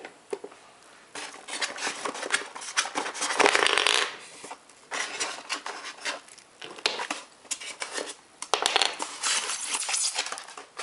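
Handling noise as toy train cars are pulled out of a polystyrene foam packaging insert: foam rubbing and scraping, with clicks and clatter of the plastic cage carts and wooden pieces. There are irregular scrapes throughout, with a longer, louder one about three seconds in.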